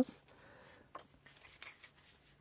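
Lenormand cards being drawn from a deck and laid on a table: a faint papery rustle, then a few light taps.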